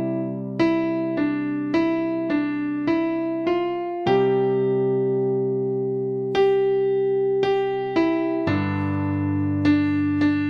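Electronic keyboard with a piano voice playing a hymn melody slowly in C major: single right-hand notes over held left-hand chords, with one long held note in the middle. The bass shifts lower near the end as the chord changes from C to G.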